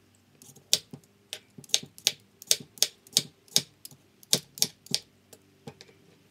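Hand vegetable peeler scraping the skin off a potato in quick, crisp strokes, about two to three a second.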